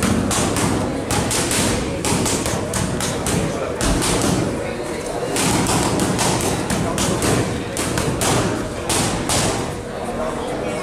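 Boxing gloves striking focus mitts in quick combinations: sharp smacks several a second, coming in bursts with short pauses between them.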